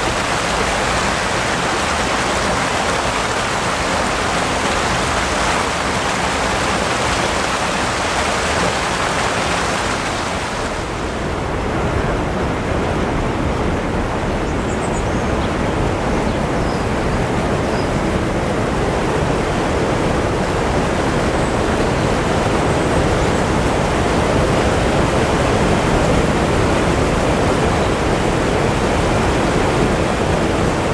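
Steady rush of water pouring over a canal weir. About eleven seconds in it changes to a deeper, duller rushing of water tumbling through a stone lock chamber.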